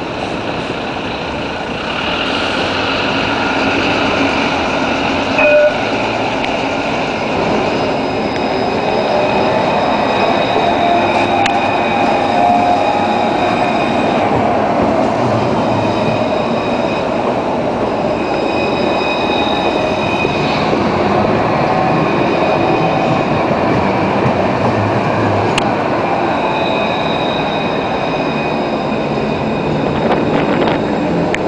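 Luas light-rail tram (Alstom Citadis) rolling slowly past close by: a steady rolling and motor rumble with thin high whines from the traction equipment and wheels that come and go. A short ringing tone sounds about five and a half seconds in.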